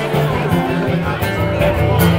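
Live acoustic band: an acoustic guitar strummed over sustained keyboard notes, with chatter in the room behind.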